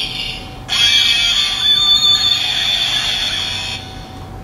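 Electronic sound effect played through a toy transformation belt's small built-in speaker: a loud, steady, high buzzing tone with some wavering notes under it, starting just under a second in and cutting off shortly before the end.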